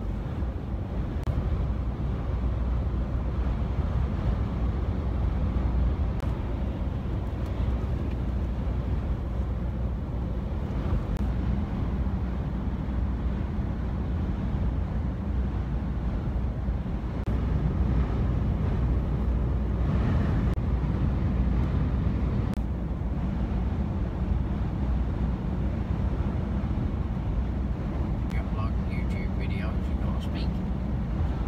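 Steady low road and engine noise inside a lorry cab cruising at motorway speed, with no sudden events.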